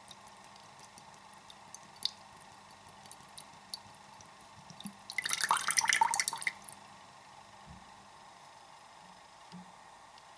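Coconut water dripping drop by drop from a hole in a coconut into liquid in a ceramic bowl. About five seconds in, it runs as a thin pouring stream for roughly a second and a half, then falls back to single drips.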